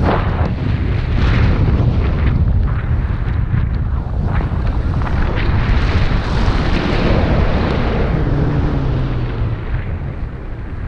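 Airflow buffeting the camera's microphone during a tandem paraglider flight: a loud, rough rumble that rises and falls with the gusts.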